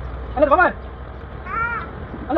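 A crow cawing once, a single short arched call about a second and a half in, after a brief snatch of a man's singing voice.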